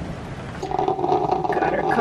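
Drip coffee maker brewing: a steady buzzing hum sets in about half a second in, after a moment of soft hiss.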